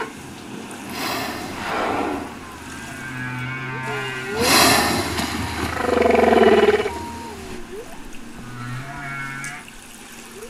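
Humpback whale calls: a series of pitched tones that glide up and down, with low steady hums and a louder rasping burst about halfway through.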